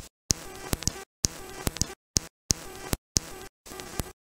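Glitched, stuttering video playback audio: about six short buzzy snippets cut apart by dead-silent gaps, with a click where each snippet starts and stops.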